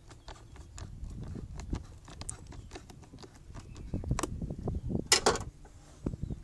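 Worm-drive hose clamp (jubilee clip) on an air intake hose being unscrewed with a flathead screwdriver: a run of irregular small clicks and ticks as the screw turns, with a louder clatter about five seconds in.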